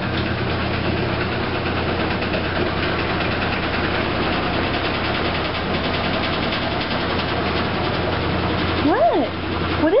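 Top-loading washing machine running with a steady low hum and a fast, even pulse: the strange noise coming from the machine.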